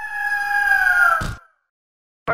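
Eagle screech sound effect: one long, clear call that slides slowly down in pitch for about a second and a half, ending in a short burst of noise.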